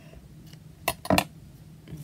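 Two sharp clicks about a second in, close together, from a pair of scissors being handled at a craft cutting mat, over a steady low hum.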